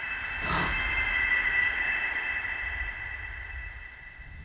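Sound-design sting for a studio logo: a hit about half a second in, then a steady high ringing tone over a low rumble, slowly fading.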